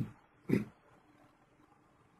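A person coughing twice: two short bursts about half a second apart, the first right at the start.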